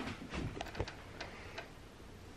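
Several quiet, irregularly spaced clicks and taps, most of them in the first second and a half, over a low room hum.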